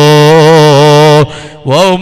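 A man's voice holding one long chanted note with a slight waver, breaking off just over a second in; a new chanted phrase starts near the end.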